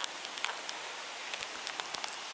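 Bicycle tyres rolling over a dry dirt track: a steady, quiet hiss with scattered small ticks and crackles.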